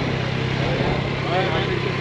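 Yamaha XSR900's three-cylinder engine idling steadily, a low even hum in neutral.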